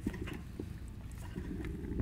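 Fuel trickling and dripping faintly out of a small-engine carburetor float bowl as it is loosened and lowered by hand, with light handling noise.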